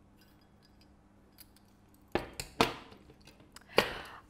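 A quiet stretch, then three sharp clinks about two seconds in, half a second later and near the end, the last the loudest. They come from a metal tablespoon knocking against the glass sugar jar and the ceramic jug as sugar is spooned in.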